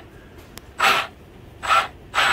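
A man breathing out sharply twice, short noisy breaths about a second apart, over a faint steady background.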